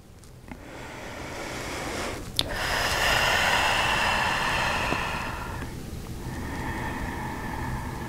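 A woman breathing audibly close to the microphone: one long breath swells and fades over about five seconds, then a quieter second breath follows. There is a small click about two and a half seconds in.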